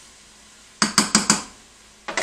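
A stirring spoon knocked against a saucepan four times in quick succession, about a second in: sharp metallic clicks as it is tapped off after stirring.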